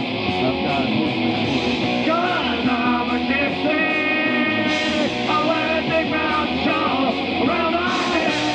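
Live rock band playing, with electric guitars, bass and drums and a singer's voice over them.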